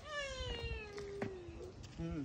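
A long drawn-out cry sliding slowly down in pitch for nearly two seconds, followed at the very end by a second, shorter falling cry.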